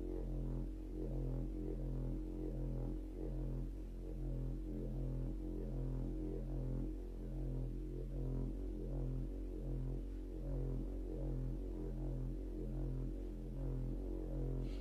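Background meditation music: a low electronic drone with a deep note pulsing at an even, slow rhythm.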